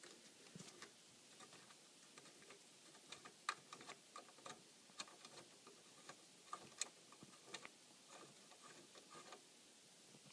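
Very faint, irregular small metal clicks and ticks: a nut being turned off its bolt by hand on a welded steel RC trailer frame.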